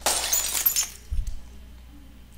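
A drinking glass shattering: a sharp crash with ringing, tinkling fragments lasting under a second, followed by a short dull low thump.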